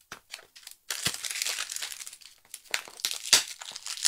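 Crinkling and rustling, as of something being handled, starting about a second in with a few sharper crackles.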